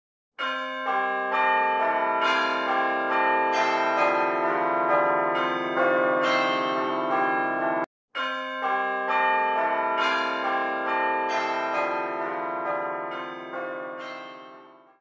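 Church bells ringing a peal of quick successive strokes, about two a second. The ringing cuts out abruptly for a moment about eight seconds in, then starts again and begins to fade near the end.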